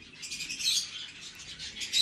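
Pet parrot chirping and chattering in quick, high-pitched notes, a little louder about half a second in.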